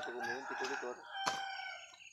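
A rooster crowing: one long crow that ends on a held steady note. A single sharp knock about a second and a half in, a blade striking a coconut.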